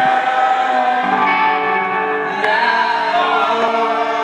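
Live band playing a loud song: sustained electric guitar chords with vocals over them.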